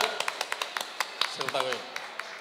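Scattered hand clapping from a few people, loose and irregular, thinning out and getting quieter, with a short voice sound about one and a half seconds in.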